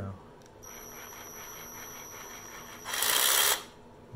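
Ryobi One+ 18V cordless reciprocating saw run free in the air on its variable-speed trigger. A light squeeze from about half a second in runs the motor quietly with a high whine. About three seconds in, a harder squeeze gives a much louder burst of the reciprocating blade for about half a second, then it stops.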